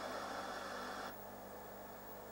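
Faint hiss of static from an untuned analogue satellite receiver, heard through the monitor's speaker as the receiver is tuned. About a second in the hiss thins out and gets quieter as the receiver tunes onto the test transmission. A faint steady low hum lies under it.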